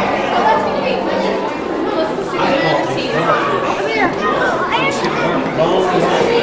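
Crowd of visitors talking at once: indistinct overlapping chatter, with some higher voices rising and falling about two-thirds of the way through.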